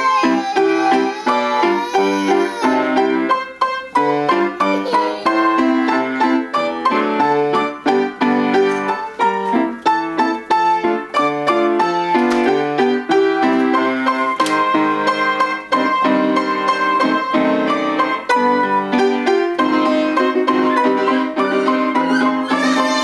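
Upright piano played four hands as a duet: a continuous run of struck notes, a lower part under a higher melody.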